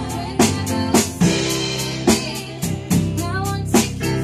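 Live band playing a slow song: a drum kit with sharp snare and cymbal hits about once a second over sustained keyboard, electric bass and electric guitar, with a voice singing.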